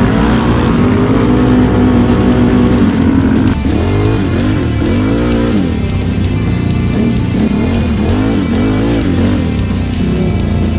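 Guitar-driven background music over ATV engines. From about a third of the way in, the engines rev up and down repeatedly in a rising and falling pitch.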